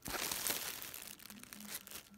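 Clear plastic bags crinkling as a hand shifts bagged neckties in a small storage bin, louder in the first half second and then softer.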